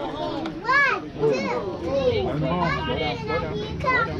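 Young children shouting and calling out, several high voices overlapping, with one loud high call about a second in.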